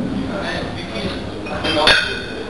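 Iron weight plates on a heavily loaded barbell clank and ring briefly near the end as the bar is pressed up during a bench press. People's voices call out around it.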